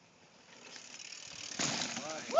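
Mountain bike's rear freehub ratchet clicking as the bike coasts off a rock drop, growing louder, then a sharp thud about one and a half seconds in as the bike lands.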